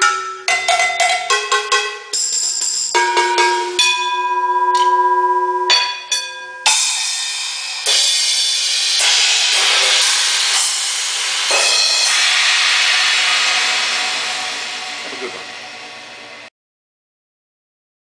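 Large drum kit played with sticks: quick struck hits on drums and metal percussion ring with clear pitched tones for the first few seconds. Then crashing cymbals build into a long wash that swells and slowly fades, cut off abruptly a little before the end.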